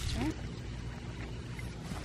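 Steady low rumble of wind on the microphone, with a brief spoken "yeah" at the start.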